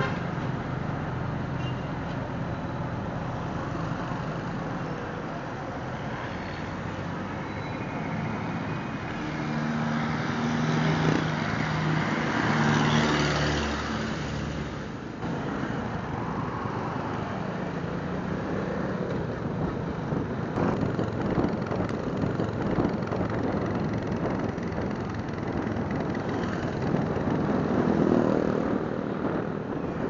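Riding in town traffic on a Suzuki Smash motorcycle: its small engine runs under way with road and wind noise, and other vehicles are close around. A louder engine hum rises and falls about ten to fifteen seconds in.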